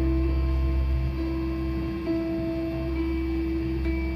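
Live indie-folk band music: a slow instrumental passage of long held notes over a steady low drone, with no singing.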